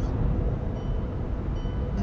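Steady low road and engine rumble inside a car cruising on a motorway, with a few faint steady tones above it.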